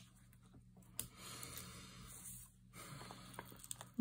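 Faint rubbing and rustling of a hand pressing a sheet of foam adhesive dimensionals onto the back of a paper flower, with a light tick about a second in.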